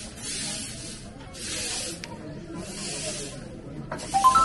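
Grass broom sweeping a paved lane: a run of scratchy swishes, about one stroke a second.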